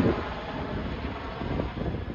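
Chinook tandem-rotor helicopter heard at a distance as it flies away, its rotor and engine noise a low, steady rumble mixed with wind buffeting the microphone.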